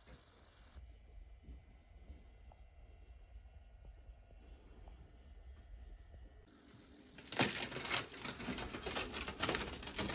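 Rusted-through galvanized steel flue vent pipe crackling and crumbling as pieces are broken off by hand; the corroded metal is falling apart. The crackling starts suddenly about seven seconds in, after a stretch of faint low rumble.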